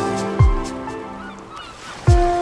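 Lo-fi hip-hop music: a soft kick drum under held keyboard chords about half a second in, then the beat drops out and the music thins and fades, with a brief gliding sound near the end.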